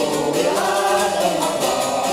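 Mixed choir of mostly women singing a song in unison, accompanied by a citera (Hungarian zither) strummed in a quick, even rhythm.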